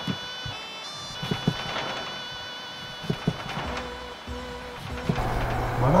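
Background music with long held tones, over which a knife gives several short knocks as it slices through boiled pork onto a cutting board.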